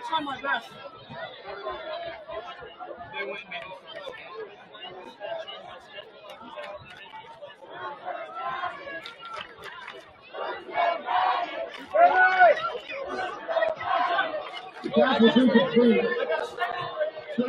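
Crowd and sideline chatter at a football game: many indistinct voices talking at once, with louder shouts from about eleven seconds in.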